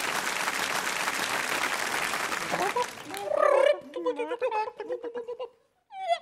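Audience applause that dies away after about two and a half seconds, followed by a few seconds of wavering, cackling poultry-like calls.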